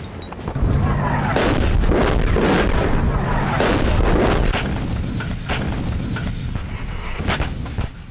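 Battle sounds: a continuous heavy low rumble of artillery fire and booms, with sharp gunshot cracks scattered throughout and sweeping whooshes between them.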